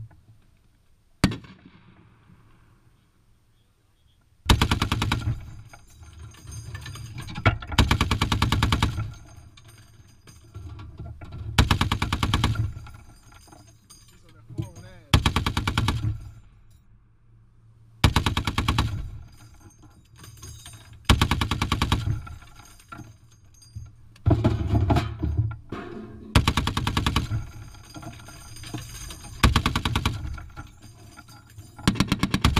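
Browning M2 .50 caliber heavy machine gun firing: a single shot about a second in, then about eight short bursts of one to two seconds each, a couple of seconds apart, with a longer burst near the end.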